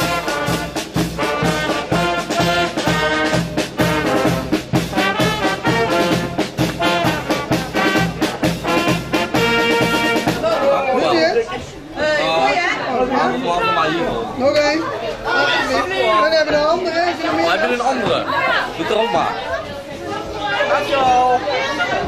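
Upbeat brass music with a steady beat for about ten seconds, then, after a cut, a room full of people chattering over one another.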